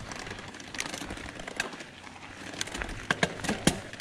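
Mountain bike rolling over a gravel track: steady tyre and riding noise, with scattered sharp clicks and rattles from the bike over bumps, more of them near the end.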